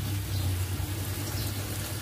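Steady low hum with a faint hiss from a pot of water boiling on a gas burner under a bamboo basket of steaming sticky rice.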